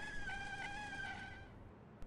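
A sustained, slightly wavering high musical note, like a theremin or sawing tone from the film's score, fading away about a second and a half in.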